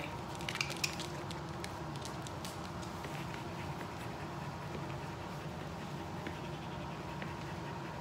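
Light clicks and taps on a hard floor, mostly in the first few seconds, from dogs' claws and feet stepping in short rubber-soled swim fins, over a steady low hum.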